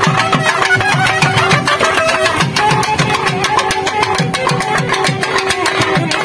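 Naiyandi melam folk band playing a kuthu dance tune: a reed-pipe melody over a steady held drone note, driven by fast, dense drum strokes with repeated low, pitch-bending drum beats.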